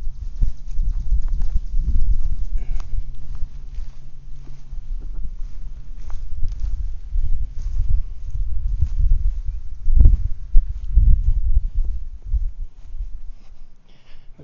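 Footsteps walking over grass and dirt, with wind rumbling on the phone's microphone; irregular low rumble, scattered soft thuds and clicks, and a faint steady hum for the first few seconds.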